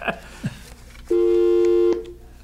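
Telephone line tone on the studio's call-in line: a steady two-note tone that starts about a second in and cuts off sharply just under a second later.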